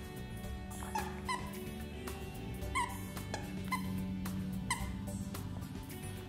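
Siberian husky chewing a stuffing-free plush toy, setting off its squeakers in several short squeaks, over background music.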